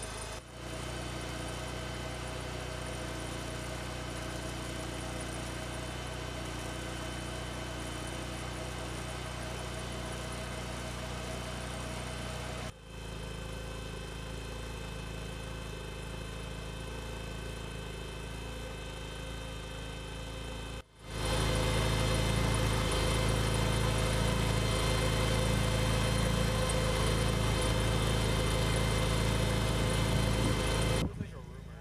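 Engine of a robotic military ground vehicle idling steadily, with a constant hum. It breaks off briefly a few times and is clearly louder from about 21 seconds in.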